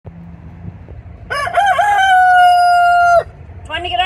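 A rooster crowing once. About a second in, a few short broken notes lead into one long held note that ends abruptly.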